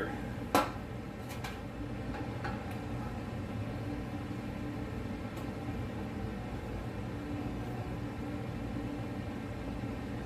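A sharp knock about half a second in, then a few faint metal clicks as a wrench tightens a steel-braided PTFE fuel-line fitting held in a bench vise. A steady low hum runs underneath.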